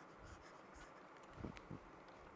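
Near silence with a few faint stylus strokes on a writing tablet about a second and a half in.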